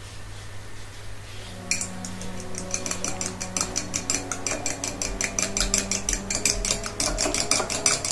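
A raw egg with a pinch of salt being beaten with a utensil in a small glass dish, the utensil clicking against the glass in a quick, regular rhythm that starts about two seconds in. The yolk and white are being mixed into an egg wash for breading chicken.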